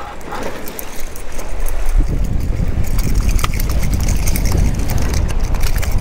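Spinning reel being cranked to bring in a hooked bluefish, the reel's gears ticking. A low rumble comes in about two seconds in.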